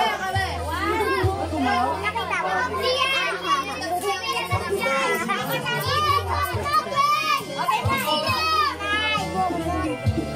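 A group of children talking, calling out and laughing over one another, with music playing underneath.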